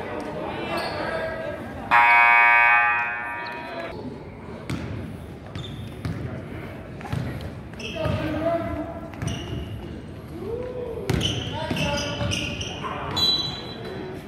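Gym scoreboard horn sounds once, a loud steady buzz lasting about two seconds, signalling the end of a timeout. Afterwards a basketball is dribbled on the hardwood amid players' voices.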